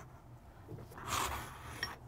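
Quiet handling of disassembled 1911 pistol parts on a bench mat: a soft scrape a little after a second in, then a small metallic clink near the end.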